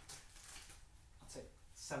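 A quiet pause with a few faint, short rustling noises. A man's voice starts again near the end.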